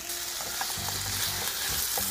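Chicken, bell peppers and onion sizzling in a nonstick frying pan with fajita sauce, stirred with a slotted spatula, a steady sizzle with light scrapes of the spatula.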